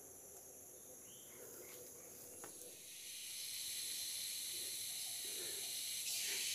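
Faint at first, then from about halfway a steady high-pitched hiss of rainforest insects comes in and holds level.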